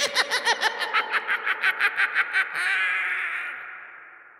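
An evil cackling laugh: rapid ha-ha-ha bursts for about two and a half seconds, then a held final note that fades away in a long echo.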